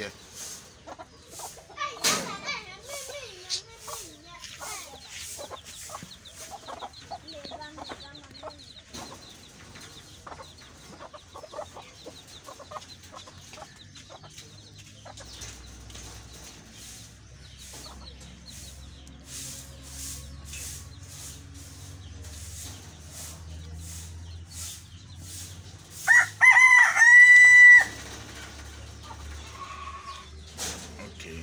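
A rooster crows once near the end, a loud call about two seconds long. Before it come scattered quieter clucks and bird calls.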